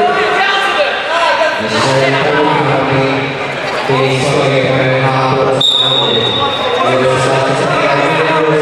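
Overlapping voices calling out in a large hall. A little past halfway, a referee's whistle sounds one steady, shrill blast lasting just over a second.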